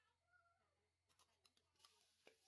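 Near silence, with a faint short tone about a third of a second in and faint scattered ticks in the second half.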